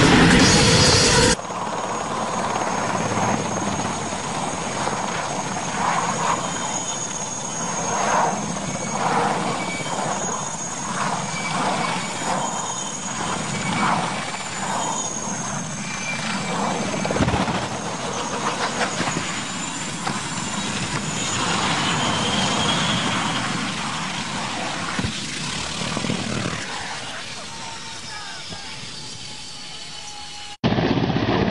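A loud noisy burst cuts off about a second in, then a tandem-rotor helicopter runs with a thin, wavering high turbine whine over rotor noise. A thump comes about seventeen seconds in, and the sound slowly fades toward the end, with faint voices underneath.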